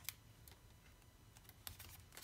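Near silence with a few faint light clicks of a sticker sheet being handled over a planner page: one click right at the start and a small cluster near the end.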